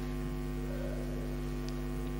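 Steady electrical mains hum: a low, unchanging buzz with a stack of even overtones, picked up through the microphone and recording chain.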